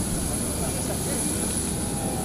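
Steady noise of a parked jet airliner with a high, steady whine, under the faint talk of a crowd of people.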